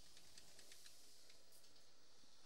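Near silence: a faint steady hiss with a few faint ticks.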